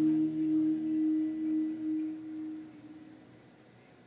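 A live band's last chord on electric guitars and bass left to ring, one steady low sustained tone fading out and dying away about three seconds in: the end of the song.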